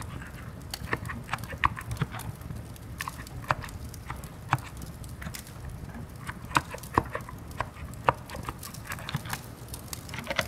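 Slow, irregular typing on a quiet contactless (electrostatic capacitive) keyboard: single keystrokes and short runs of clicks with pauses between them, over a low steady rumble.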